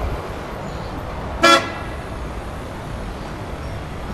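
A single short car horn toot about a second and a half in, over steady street traffic noise.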